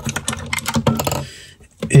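A quick, irregular run of light clicks and taps as a strip of flat latex slingshot band is handled and laid down on a plastic cutting mat, fading out after about a second and a half.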